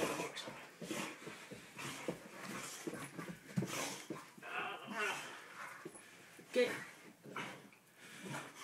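A dog vocalizing in short bursts while play-wrestling with a man, with scuffling on the carpet and the man's voice now and then.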